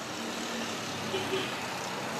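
Steady, faint background hum and hiss with no distinct events.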